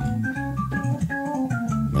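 Hammond SK Pro stage organ playing a tune: a melody of short held notes stepping over sustained low chords.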